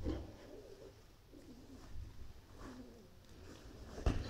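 An animal making a few soft, low, wavering cooing sounds, faint against a low rumble.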